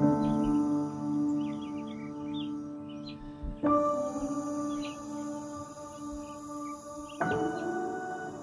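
Soft background music of held chords that change about every three and a half seconds, with faint bird chirps above it.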